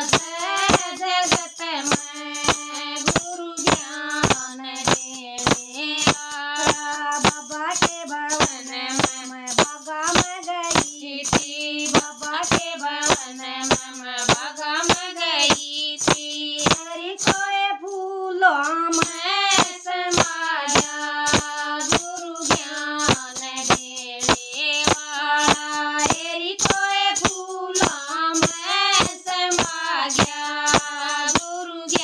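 Two women singing a Hindi devotional bhajan together, keeping time with handheld shakers that rattle sharply on every beat, about two strokes a second. The singing breaks off briefly just past the middle.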